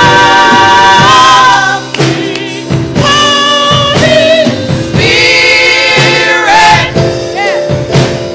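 Gospel choir singing with instrumental accompaniment: long held notes and wavering runs with vibrato, with short percussive hits; the music drops in loudness about two seconds in, then swells again.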